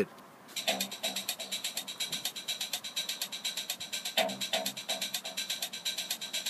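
Electronic dance track playing through a small Wowee One gel speaker, starting about half a second in with a fast, even hi-hat-like beat and short low notes under it.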